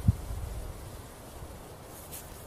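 Quiet outdoor lull: a faint low wind rumble on the microphone, with a soft low thump right at the start.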